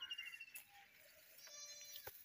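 Near silence between spoken counts, with only a faint, thin high tone near the end.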